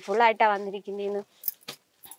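A woman's voice for about a second, then a few brief crisp rustles as a grey silk saree is shaken and opened out by hand.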